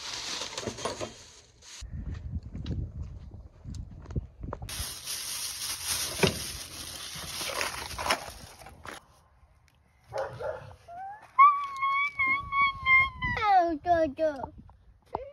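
Several seconds of handling and rustling of plastic packaging, then a dog whining in one long high-pitched call about eleven seconds in that holds steady and drops in pitch at the end.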